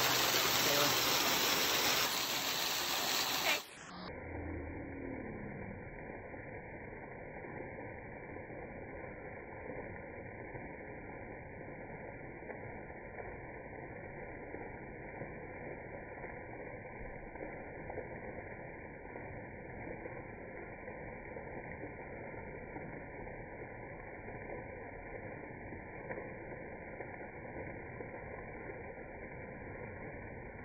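Small waterfall spilling down rock ledges and splashing below: a steady rush of falling water. It is full and bright for the first few seconds, then abruptly turns muffled and quieter.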